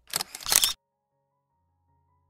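Camera shutter sound effect, a quick two-part click-and-clack lasting under a second, laid over a scene transition, followed by faint background music.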